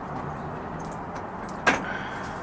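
Steady hum of traffic from the street below, with one sharp click near the end.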